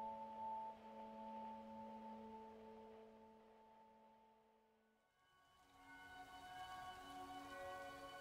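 Soft, slow instrumental music at the gap between two pieces: long held notes die away to silence about four and a half seconds in, then quiet sustained high tones fade in as the next piece begins.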